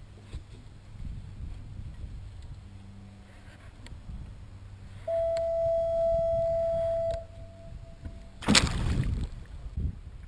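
Fishing reel's drag giving a steady whine for about two seconds as a hooked shark takes line, then a loud splash near the end.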